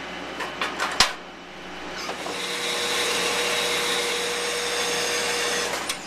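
A few clicks and a sharp metal clank about a second in, then a power cutting machine runs steadily through steel bar stock with a faint constant whine for about four seconds, stopping near the end.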